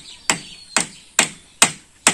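Hammer blows on the wooden frame of a boat under construction: four even, sharp strikes about two a second.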